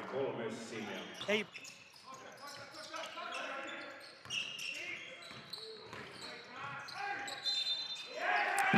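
Live basketball game sound in a large sports hall: a basketball bouncing on the court floor as it is dribbled, with voices from players and the crowd echoing in the hall.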